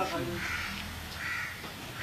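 Crows cawing: two short, harsh caws, about half a second and about a second and a quarter in.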